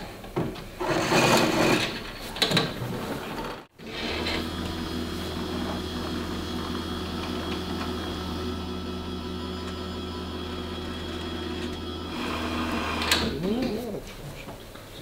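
Electric anchor winch motor running steadily with an even hum as it works the anchor rope, then cutting off suddenly about a second before the end. Irregular clattering and handling of the winch and locker come before it.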